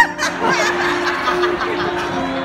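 People laughing hard, starting with a sudden high squeal, over steady plucked-string background music.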